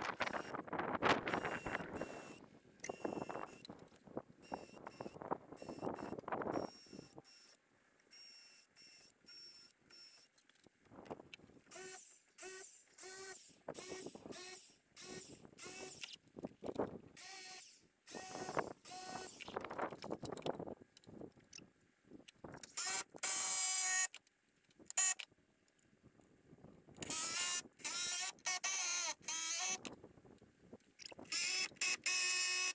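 A power drill-driver running in short repeated bursts of about half a second, some spinning up in pitch, driving screws to fasten a wooden face board onto a log.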